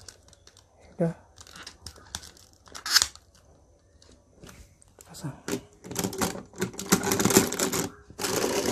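Hard plastic toy parts of a DX Goseiger combining robot handled and clicked together: scattered small clicks, a sharp snap about three seconds in, then a dense run of plastic rattling and clattering near the end as the shark piece is fitted onto the robot.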